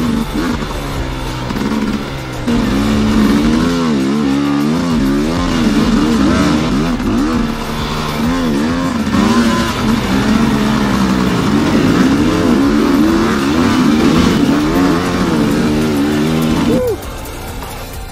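Dirt bike engine heard close from the bike being ridden, its revs rising and falling again and again as the rider works the throttle, then cutting off suddenly near the end.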